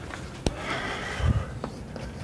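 A man sniffing once between sentences, with a sharp light click before it and a soft low thump and a faint click after.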